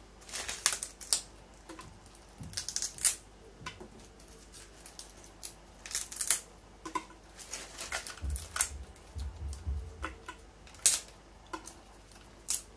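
Dry lower leaves of a pineapple crown being stripped off the base one at a time: irregular crisp snaps and crackles of leaf tearing away. There are a few dull low thuds about eight seconds in.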